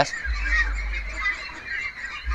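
A flock of domestic white Pekin ducks quacking and calling over one another, over a low steady rumble.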